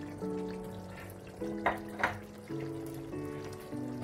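Background music of held notes changing about every second, with two sharp clicks near the middle.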